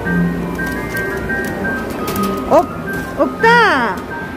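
Arcade prize machine music: a simple electronic jingle of short beeping notes playing in a loop. A brief voice-like rising cry comes about two and a half seconds in, and a louder one that rises and then falls comes near the end.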